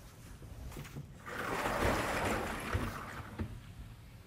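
Chalkboard eraser rubbed across a blackboard: one rubbing wipe that starts about a second in and lasts about two seconds.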